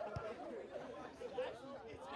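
Indistinct chatter of several people's voices talking over one another, with a brief low thump near the start.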